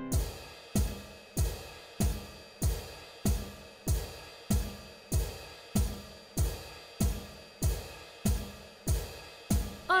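Steady marching beat of classroom percussion: a drum and a cymbal struck together about three times every two seconds, each hit ringing briefly before the next.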